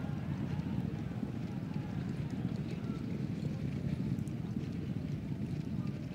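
Racecourse ambience: a steady low rumble with the hoofbeats of racehorses galloping and slowing on turf after the finish.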